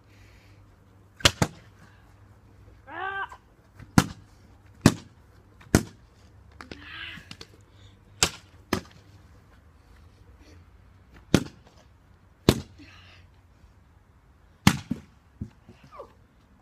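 A tough plastic bottle being bashed with a hand-held object and against hard ground: about eleven sharp knocks and cracks at irregular intervals, some in quick pairs, while the bottle still does not break open.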